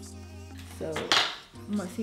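A short clatter of hard, metallic objects, loudest a little past one second in, over soft background music.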